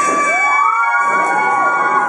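Siren-like wail played over the stage sound system during a dance routine: several tones sweep up just after the start, hold high and steady, then fall away.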